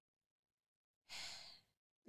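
Near silence, then about a second in a short breath from a woman close to the microphone, lasting about half a second.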